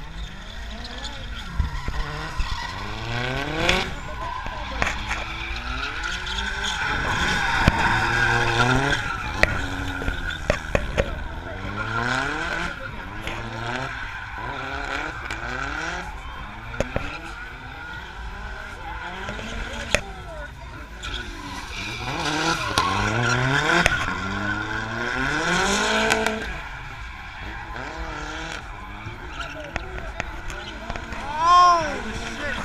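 Drift car's engine revving up and falling back over and over while its rear tyres squeal in long slides. There are loud stretches of revving about 7 to 9 seconds in and again about 22 to 26 seconds in.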